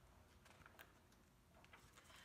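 Near silence: quiet room tone with a few faint soft clicks.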